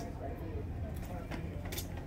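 Department store background: indistinct voices of other people over a steady low hum, with a few light clicks.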